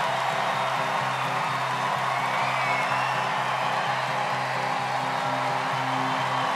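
Studio audience cheering and clapping over a music track with a steady low beat pulsing about twice a second, with a few whoops rising above the crowd.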